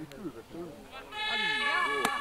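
Faint shouts of players on the pitch. About a second in, a steady, even horn-like tone starts and holds for about a second.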